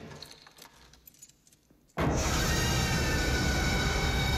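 Quiet film-scene ambience with a few faint clicks. About halfway in comes a sudden, loud horror-film jump-scare sting: a harsh burst of music with several high held tones over a dense low rumble, sustained at full volume.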